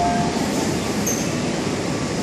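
MTR Kwun Tong line M-Train moving alongside a station platform: a steady rumble of wheels and running gear heard through the platform screen doors.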